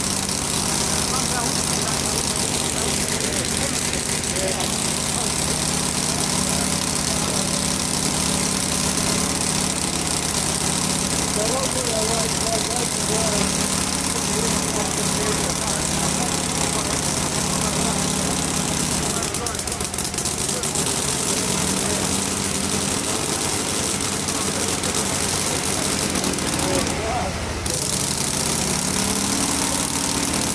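Small hand-built model internal-combustion engine running steadily on methanol fuel, with a steady low running note that falters briefly about two-thirds of the way through.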